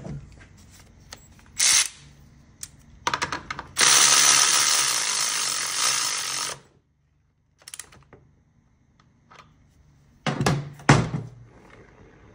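A handheld power tool runs for about three seconds, then stops abruptly. Clicks and knocks of metal parts being handled come before and after it.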